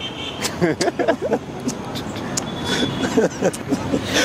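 A man's voice in short, quiet fragments over a steady background rumble that slowly grows louder.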